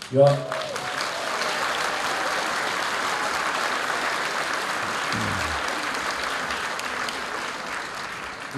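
Audience applauding steadily for several seconds, easing off slightly near the end.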